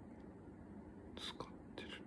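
Faint steady hum of a laptop running under heavy load, with two short breathy hisses, one about a second in and one near the end.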